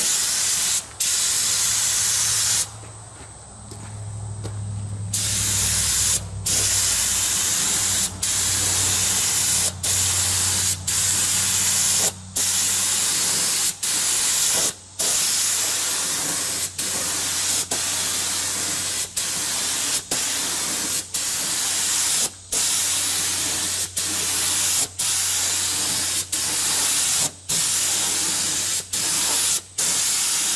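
Air spray gun with a top-mounted gravity-feed cup, spraying paint in a steady hiss that breaks off briefly every second or two as the trigger is released. About three seconds in, the spray stops for about two seconds, and a low hum comes in that carries on underneath the spraying.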